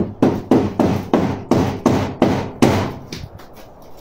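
A rapid series of hard knocks or bangs, about five a second, that stops about three seconds in. These are the unexplained noises that the guard takes for something paranormal.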